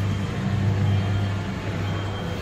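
Coin-operated kiddie ride's electric motor running with a steady low hum.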